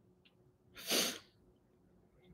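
A single short, sharp burst of breath noise from a person about a second in, against quiet room tone.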